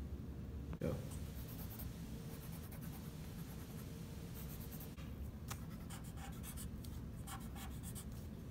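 Pencil and pen scratching on lined paper as someone writes, in short strokes that come thicker in the second half, over a low room hum. A brief louder sound about a second in.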